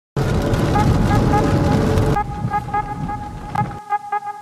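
Car driving on a rain-soaked highway, road and rain noise heard from inside the cabin, under music made of a quick repeating run of short bright notes. About two seconds in the road noise drops sharply, and the music carries on alone.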